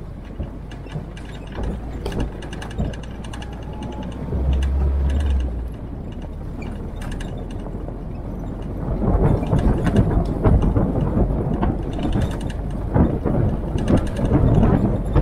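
Military-style Jeep driving on a rough gravel track, its body and fittings rattling and clattering over the bumps above the low running of the engine. The rattling grows rougher and louder about two-thirds of the way through.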